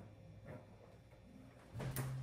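Quiet handling of a plastic balloon stick and a handheld cutter being set in place for a cut, with a faint tap about half a second in and a soft rustle just before the end. A faint low hum comes in near the end.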